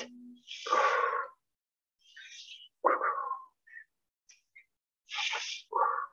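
A woman breathing hard under exertion: short, hissing inhales, each followed by a forceful puffed exhale, in separate bursts every two to three seconds.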